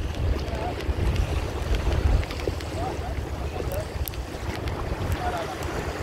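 Wind buffeting the microphone in a continuous, uneven low rumble, over the wash of shallow seawater.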